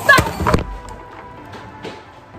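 A woman's sharp shout of "stop!", then soft background music with a few faint held tones.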